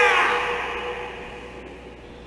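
The end of a karateka's kiai shout, given with a punch in kata: the shout drops in pitch in its first moments, then dies away into the hall's echo over about a second and a half.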